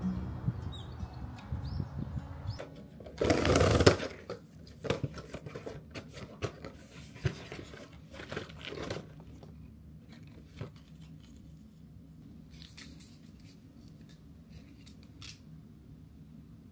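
Cardboard box torn open along its perforated tear strip, one loud rip about three seconds in, followed by cardboard and paper packets rustling and clicking as the box is opened and a stick packet is handled.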